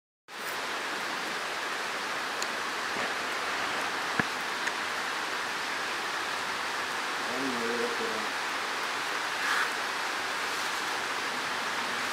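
Steady hiss of rain falling, with a few sharp clicks and a brief faint voice about eight seconds in.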